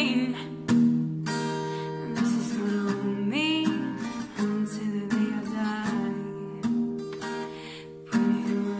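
Capoed acoustic guitar strummed in a slow song, with a woman singing over it.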